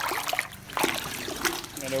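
Water splashing and trickling as a soaked carpet floor mat is worked in a bucket of rinse water and lifted out, with water streaming off it back into the bucket.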